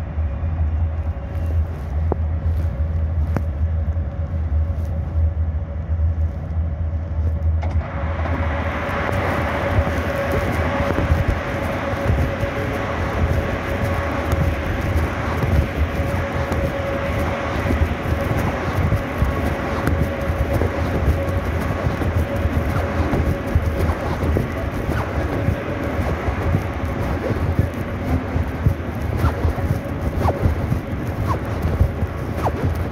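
Moscow Metro train heard from inside the carriage: a low hum at first, then about eight seconds in a loud rushing noise with a steady whine sets in and continues.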